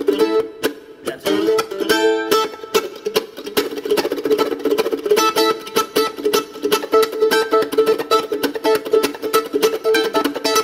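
F-style mandolin strummed in a fast, funky rhythm: a dense stream of short percussive strokes between ringing chords, with a brief break just under a second in.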